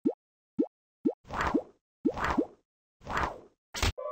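Cartoon sound effects: four short, quickly rising 'bloop' plops about half a second apart, then three longer swishing bursts, each with a rising bloop inside, and a short sharp burst near the end.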